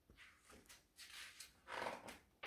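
Faint rustling of a picture book's paper page as it is grasped and turned, a few short swishes with the loudest near the end.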